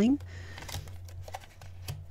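Tarot cards being handled and laid down on a tabletop: faint card rustles and slides, then a light tap of a card near the end.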